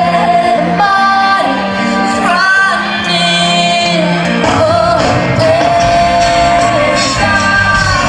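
Live rock band playing loudly in a large hall, with a female lead singer singing over it and holding a long note midway.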